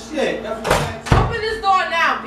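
Two heavy thumps against a door, about half a second apart, near the middle, with a voice speaking around them.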